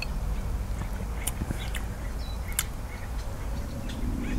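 Quiet garden ambience with a steady low rumble, a few faint bird chirps and small sharp clicks.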